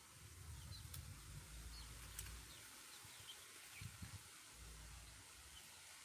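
Near silence with faint, scattered high peeps from young goslings and ducklings, about eight short chirps over a few seconds, over a low rumble.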